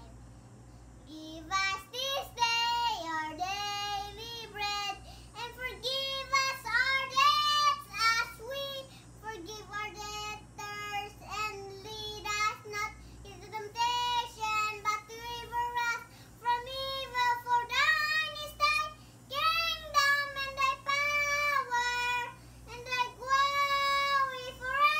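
A young boy singing alone, unaccompanied, in phrases with short breaks between them, starting about a second and a half in.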